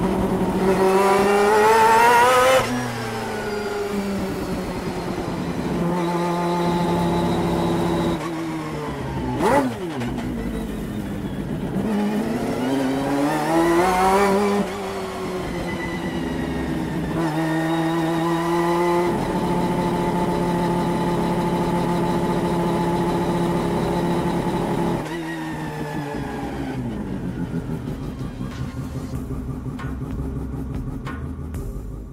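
1991 Mazda RX-7 GTO's four-rotor racing engine heard from inside the cockpit. Its revs climb twice and drop sharply at each upshift, with long stretches of steady running between. There is a short sharp crack about a third of the way in, and the note falls away near the end as the car slows.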